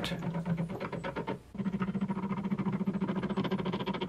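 Motor-driven gear train of a wooden glue-testing machine running, turning a threaded rod that presses on a glued wood joint: a steady hum with fast ticking, cut briefly about a second and a half in. The joint is yielding slowly under the load without snapping.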